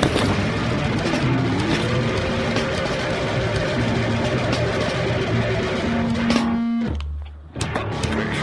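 Heavy metal band recording with distorted electric guitars and drums playing together. About seven seconds in, the band drops out for under a second, leaving only a low held bass note, before the full band crashes back in.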